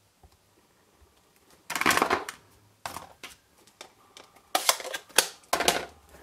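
Desk handling noises: a stamp block and ink pad put aside and small pieces of cardstock slid across the work mat. It comes in a few short bursts of rustling and clacking, the busiest cluster near the end.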